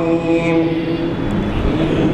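A man's melodic chanting through a microphone and loudspeaker: one long held note that fades out about a second in, followed by a brief low rumble before the next phrase.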